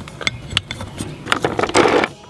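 Handling noise of small clicks and scrapes as a plug is pushed into an outdoor outlet and a plastic rotary-tool accessory case is handled. Near the end there is a louder rattling scrape.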